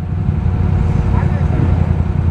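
ATV engines running steadily in a mud hole, a continuous low rumble.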